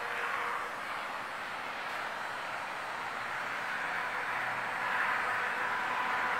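Steady background room noise: an even hiss with a faint steady hum and no distinct events.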